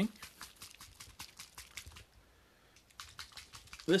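Quick, irregular light clicks and taps of a plastic Citadel paint pot being handled, pausing briefly in the middle and starting again near the end.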